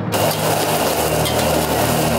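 Whole shrimp frying in hot oil: a loud, steady sizzle that cuts in suddenly.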